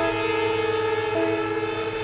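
String quartet music holding a sustained chord, with a lower and an upper note re-sounding about once a second in a slow repeating figure.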